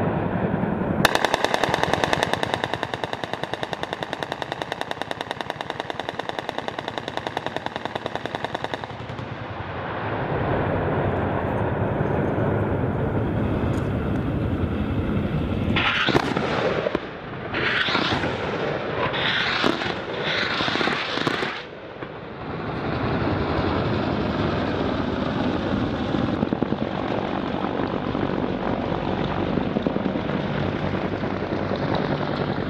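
Gunfire from AH-1Z Viper attack helicopters over a target range. A long, rapid-fire rattle runs through the first several seconds. About midway, four short, sharp bursts come roughly a second apart, over a steady background rumble of aircraft noise.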